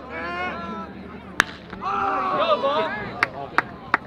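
A baseball bat hits a pitched ball once with a sharp crack about a second and a half in. Shouting voices follow, then a few short sharp knocks near the end.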